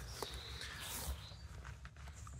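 Faint rustling of a leather knife sheath being handled, with a few light clicks.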